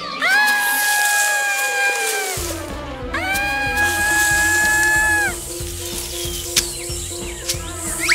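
Two long, high, held 'ooh' vocalizations from a cartoon dragon character, each lasting about two seconds, the first sliding slightly down. Background music with a steady beat comes in after about two seconds.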